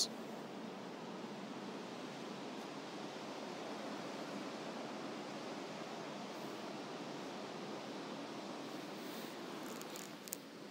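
Steady, even background hiss with no distinct events in it.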